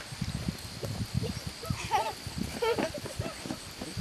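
German shepherd puppies play-fighting, with a few short whiny yelps around two and three seconds in over soft, irregular thumps and rustling.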